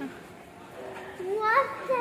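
A young child's voice, speaking or vocalising, comes in about a second in over quiet indoor room tone.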